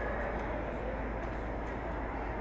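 Steady background rumble and hiss of a large covered arena, with a few faint ticks.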